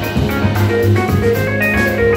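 Jazz quartet playing: hollow-body electric guitar, keyboard, double bass and drum kit, with the cymbals keeping a steady pulse under shifting pitched notes.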